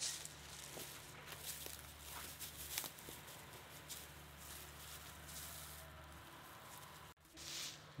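Faint footsteps and rustling in dry leaf litter, with a few light clicks and a low steady hum underneath.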